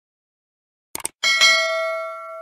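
Subscribe-button sound effect: two quick mouse clicks about a second in, then a notification bell chime that rings on in a few steady tones and slowly fades.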